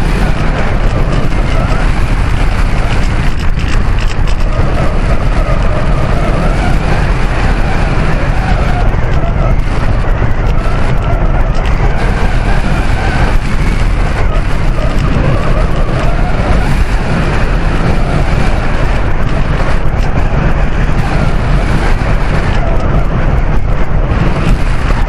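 Airflow rushing over an onboard camera on an RC slope glider gliding with its motor off: loud, steady wind noise, heavy in the low end, with faint wavering whistle-like tones.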